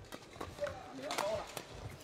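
Badminton rally: rackets hit the shuttlecock several times in quick succession, with light footwork on the court, all fairly faint.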